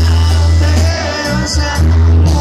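Banda sinaloense playing live over a concert sound system: a sousaphone bass line under the brass, with a male lead singer.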